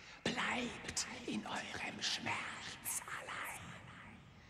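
A voice whispering spoken lines, its hissed s-sounds standing out sharply.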